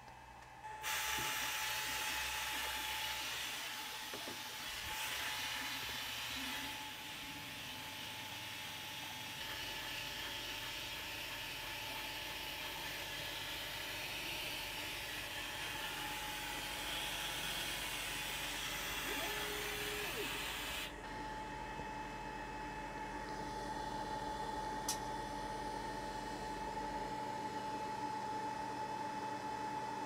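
Longer Ray 5 20W diode laser engraver running an engraving pass: a steady hiss with a constant whine over a low hum. About 21 s in, the upper part of the hiss drops away sharply while the whine carries on.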